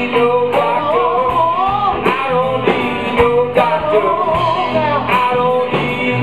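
Live blues-rock band playing: electric guitar, bass guitar and a drum kit keeping a steady beat, with a man singing over it.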